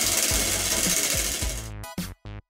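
Cardboard prize wheel spinning, its flexible pointer ticking rapidly against the rim pegs; the ticking fades and slows as the wheel coasts to a stop.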